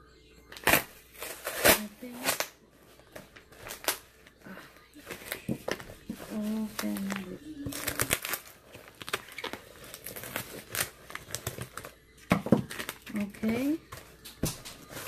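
Brown paper packaging being torn open and crinkled by hand, a run of irregular sharp crackles and rips as the wrapping is pulled off a small box.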